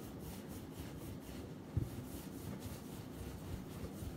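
Palms rolling a rope of buttery yeast dough back and forth on a countertop, a soft repeated rubbing. There is one soft thump a little under two seconds in.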